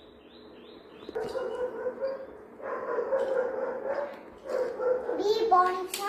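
A young girl's voice in three long, drawn-out sung vowels on a steady high pitch, each lasting a second or more with short gaps between.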